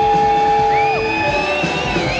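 Live rock band playing with drums, bass and electric guitars; a lead note slides up, holds, and drops back down about a second in, while a higher line climbs in just after.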